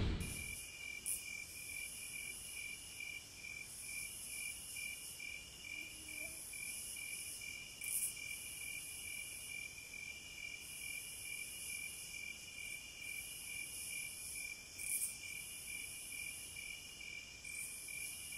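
Faint chorus of crickets and other insects: a steady, evenly pulsing chirp over a high, continuous insect hiss.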